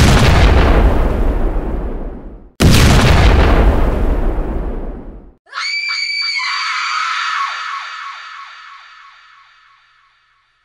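Two loud explosion sound effects about two and a half seconds apart, each dying away over a couple of seconds. Then a long high-pitched scream that wavers briefly, is held, and fades out near the end.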